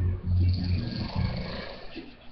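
A man snoring in his sleep: one low snore, loudest about half a second in, then trailing off.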